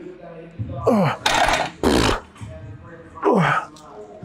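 A man groaning with short falling-pitch grunts and breathing out hard in two loud, harsh breaths, straining and winded at the end of a heavy set.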